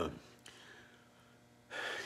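A man's speech trails off into a pause of low room tone. About a second and a half in comes an audible intake of breath before he speaks again.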